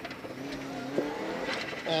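Rally car engine heard from inside the cabin, running at a fairly steady pitch, with a single short sharp click about halfway through.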